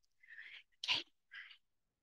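A woman's three short, breathy catches of breath close on a handheld microphone, about a second and a half apart in all: she is choked up with emotion and holding back tears mid-greeting.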